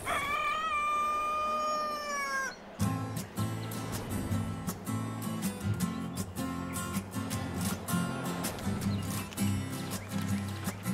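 A rooster crowing once in a long, slightly falling call, then music with a steady beat starting about three seconds in.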